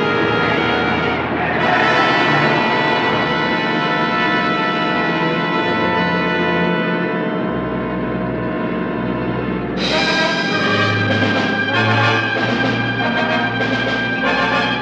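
Dramatic orchestral film score with brass and timpani: sustained chords that give way, about ten seconds in, to sharp repeated stabs.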